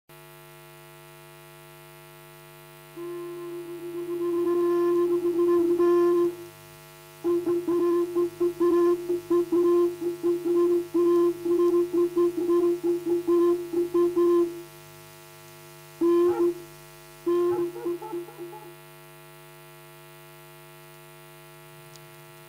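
Opening jingle of a radio news bulletin: a short instrumental melody with a wind-instrument-like tone, played as quick repeated notes around one pitch in several phrases with pauses, ending a few seconds before the end. A steady electrical mains hum runs underneath throughout.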